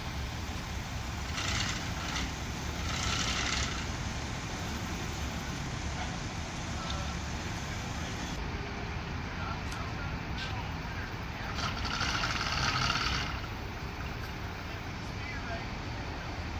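A fire engine's diesel engine running steadily at the scene with a low rumble, with faint voices and a few short hissing bursts about 1.5 s, 3 s and 12 s in.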